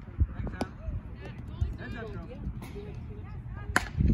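Softball bat hitting a soft-tossed ball, a single sharp crack with a brief ring near the end. A lighter knock comes about half a second in, with faint voices in between.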